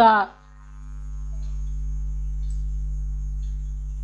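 A steady low electrical hum in the recording, swelling up over the first second and then holding level, after the last syllable of a woman's speech at the very start.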